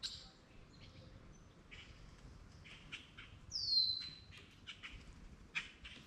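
Birds calling from the wooded riverbank: scattered short chirps, and one loud whistled call that slides down in pitch and levels off about three and a half seconds in.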